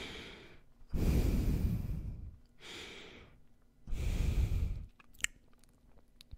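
Breathing through the nose right up against a microphone. Two loud, rumbling gusts of breath about a second long alternate with softer, hissier breaths. A few small sharp clicks come near the end.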